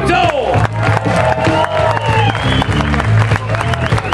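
Live electric blues band playing a groove: electric guitars over a steady bass line and drums.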